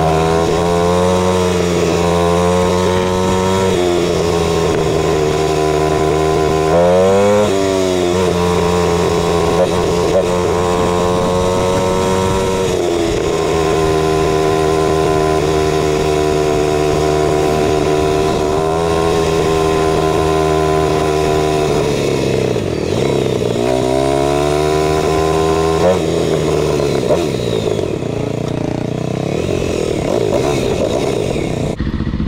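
Kawasaki KLX300R's single-cylinder four-stroke engine running under the rider. It pulls up through the revs with a pitch dip at each gear change and holds steady at cruising speed between. Over the last few seconds the revs drop off as the bike slows.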